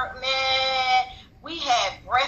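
A woman's voice holding one long drawn-out vowel at a steady pitch for about a second, followed by a short spoken syllable.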